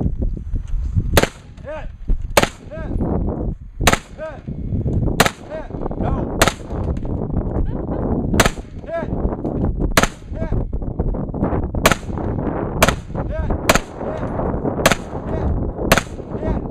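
A competitor's gunshots on a multigun match stage: about a dozen single shots, roughly one a second at an uneven pace, each with a short echo.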